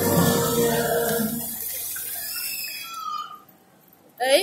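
Musical fountain show: the song fades out over the first two seconds, leaving the hiss of the fountain's water jets and mist sprays, and the sound drops away a little after three seconds in.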